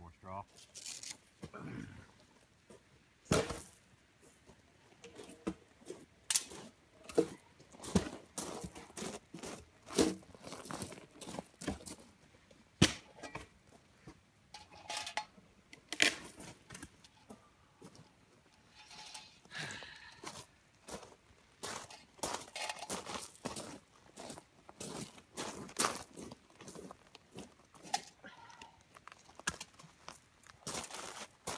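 Irregular crunching and snapping as people move on loose river gravel and handle firewood at a small campfire, with a few louder snaps scattered through.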